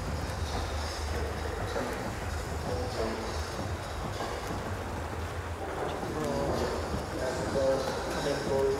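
Indoor swimming-hall ambience during a freestyle race: a steady low rumble and hiss, with water splashing from the swimmers and indistinct voices in the hall.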